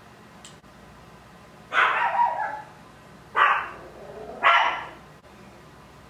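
A dog barks three times, the barks about a second apart, starting about two seconds in.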